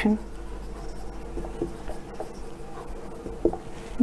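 Marker writing on a whiteboard: faint scratching and rubbing of the tip across the board as a line of text is written.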